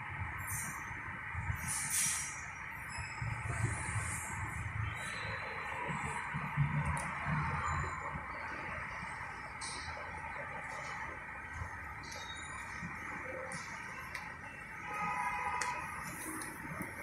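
Steady background hum of a room, with a few soft low murmurs and faint light clicks.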